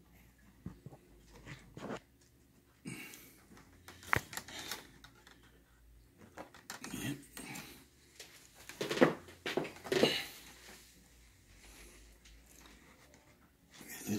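Rustling of ripstop nylon kite sails and small clicks and knocks of bamboo spars as the sails are pushed down onto the frame by hand, with a sharp click about four seconds in and louder rustles around nine and ten seconds.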